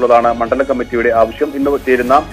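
Only speech: a man speaking Malayalam in a news report delivered over the phone, with quiet music beneath.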